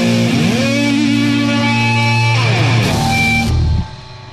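Distorted electric guitar in a hardcore/metal punk recording, holding a chord with a slide up about half a second in and a slide down near three seconds. The music drops out abruptly just before the end.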